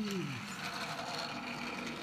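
The tail of a drawn-out cheer of 'hooray', its pitch falling until it dies away about half a second in. It is followed by faint room sound with a few soft ticks.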